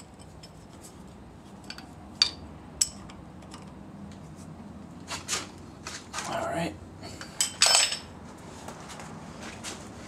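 Metal hand tools clinking against the timing belt tensioner roller as a combination wrench tightens its bolt while pliers hold the roller: a few light clicks in the first few seconds, then louder clanks from about five seconds in, the loudest near eight seconds.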